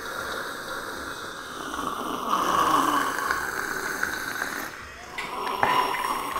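Loud, drawn-out slurping of hot tea sipped from small tea glasses. It swells about halfway through, then breaks into shorter sips near the end.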